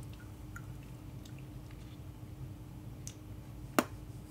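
Quiet room tone with a steady low hum and a few faint ticks of cards and game pieces being handled on a table, then one short sharp click near the end.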